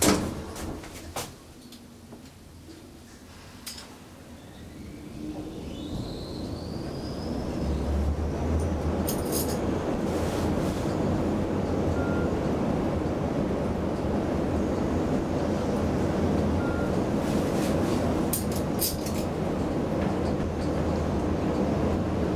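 ThyssenKrupp high-speed traction elevator travelling up: a sharp click at the start, a rising whine a few seconds in as the car gets under way, then a steady rush of air and low hum while it runs at speed, with a few clicks along the way.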